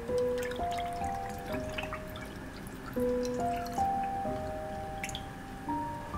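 Background music of slow, held notes; under it, orange juice pouring over ice cubes in a glass mug, with faint clicks and crackles from the ice during the first couple of seconds.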